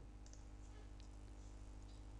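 Near silence with a low steady hum, and a few faint computer-mouse clicks, one about a second in.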